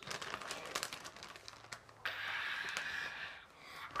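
Clear plastic toy bags crinkling and rustling as they are handled and lifted: a run of small crackles, then a steadier rustle for about a second and a half midway.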